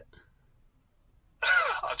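A pause of near silence in a phone conversation. About one and a half seconds in, a man's voice starts answering over a phone's loudspeaker, sounding thin and cut off in the highs.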